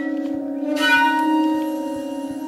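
Improvised shakuhachi and piano music: the shakuhachi holds a steady low note while piano notes are struck and left to ring, with a new bell-like chord about three quarters of a second in.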